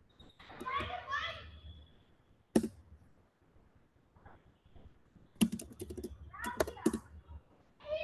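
Keystrokes on a computer keyboard: a single sharp click about two and a half seconds in, then a quick run of keystrokes over the next couple of seconds. Brief bits of voice come near the start and near the end.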